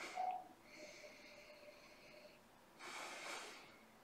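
A man nosing whisky held at his nose, with a soft inhale through nose and open mouth about three seconds in. A brief faint sound comes just at the start; otherwise it is near silent.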